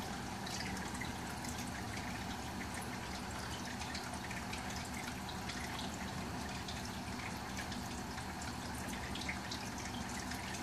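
Reef aquarium water circulating, a steady trickle with many small drips and splashes over a low, even pump hum.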